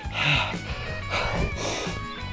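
Background music with a runner's hard, heavy breathing, two loud breaths during an all-out final-mile sprint.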